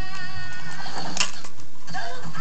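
A held, wavering musical note fades out in the first second, then a fingerboard clicks sharply once on a hard surface about a second in.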